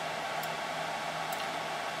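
Steady whoosh of a server's cooling fans with a faint low hum, and two faint clicks.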